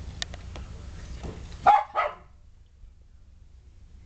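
A dog barks twice in quick succession, about a third of a second apart, after a few faint clicks.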